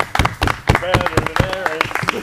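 A small crowd clapping in quick, uneven claps, with a voice calling out in the middle.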